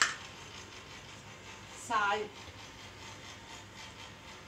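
A single sharp clack of a plastic kitchen container being handled at the start, then faint room hiss, with a woman saying "salt" about two seconds in.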